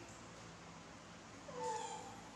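A baby macaque gives one short, slightly falling whiny call near the end, over low room hum.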